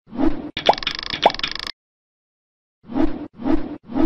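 Cartoon pop sound effects of an animated intro: a short pop, then a longer sound with two quick rising bloops, a pause of about a second, and three short pops about half a second apart near the end.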